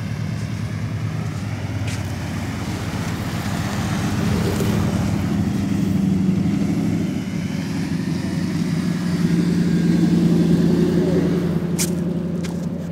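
SUV engine running as it drives slowly along a sandy track past the camera, a steady hum that grows louder as the vehicle comes close.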